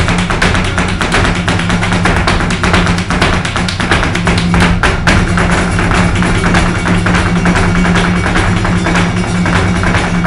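Live flamenco: a flamenco guitar playing with palmas (rhythmic hand-clapping) and the dancers' shoes striking the stage floor in rapid heel-and-toe footwork (zapateado).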